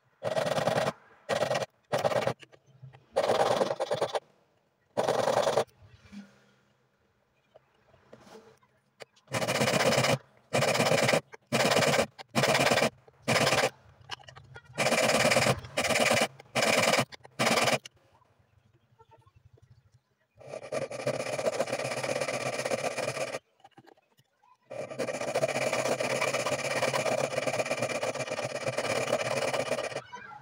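A flat hand file rasping across the edge of a silver ring held in a wooden ring clamp: irregular strokes, each under a second, with short pauses between, then two longer unbroken stretches of filing lasting several seconds each in the last third.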